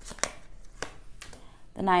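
Tarot cards being shuffled and handled by hand: soft rustling with a few separate crisp flicks of card against card.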